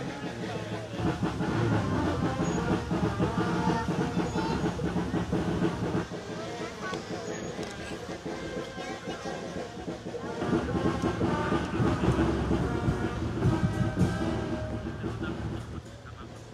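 Road-vehicle engine running with a rattling clatter, louder for several seconds about a second in and again past the ten-second mark, with voices and music faintly mixed in.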